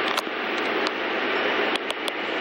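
Steady hissing background noise with a few small clicks.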